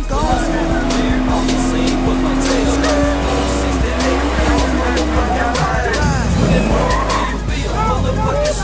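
Car tyres squealing in a smoky burnout, with the engine held at high revs early on and wavering squeals through the rest. Hip hop music with a heavy bass plays under it.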